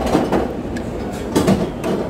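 Busy buffet-restaurant background noise with a few short clatters of serving utensils and dishes, two bunches of them, near the start and in the second half.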